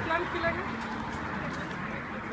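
Low chatter of a small group of people standing close by, with faint voices in the first half second and then a steady background murmur.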